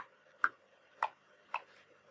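Slow typing on a computer keyboard: four separate key clicks about half a second apart.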